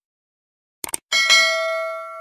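Subscribe-button animation sound effects: a quick double mouse click just before a second in, then a bright notification bell ding that rings on and fades slowly.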